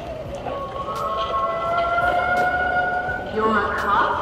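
Sound effect from the speaker of an animated Halloween ghost prop set off by its try-me button: one long electronic wail, its pitch drifting slightly upward, that cuts off about three seconds in.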